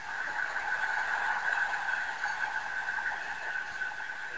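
Stadium crowd cheering a touchdown, a steady noise of many voices with no let-up.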